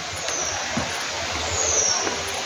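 Steady rushing of a rocky mountain stream, an even wash of water noise, with a couple of short high falling whistles over it.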